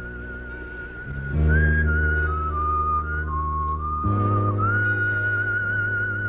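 Film background score: a high, whistle-like melody with a slow waver, held on one note, then stepping down through several notes and back up, over sustained low chords that change about a second in and again about four seconds in.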